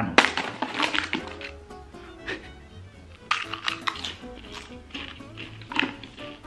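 Background music with a steady low beat, over scattered short crackles and clicks from a Pringles can being handled and opened and chips being crunched.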